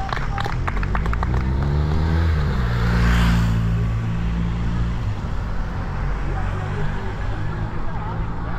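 Race team cars driving past one after another, their engine hum rising and then dropping in pitch as the nearest one passes about three seconds in, with a rush of tyre noise. Scattered hand claps from roadside spectators in the first second.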